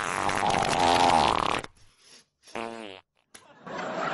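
A long, drawn-out fart with a pitch that rises toward its end. About a second later comes a second, shorter fart with a clear pitch.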